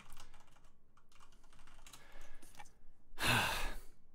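Faint clicks of computer keyboard typing picked up by a player's microphone. About three seconds in comes a louder, breathy burst lasting under a second, like an exhale into the microphone.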